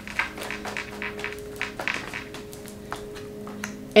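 A deck of tarot cards being shuffled and handled in the hands: a run of light, irregular clicks and card flutters.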